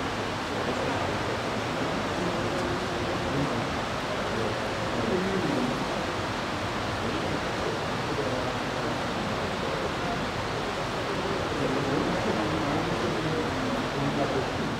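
Steady rushing room noise in a large church, with indistinct voices murmuring faintly underneath.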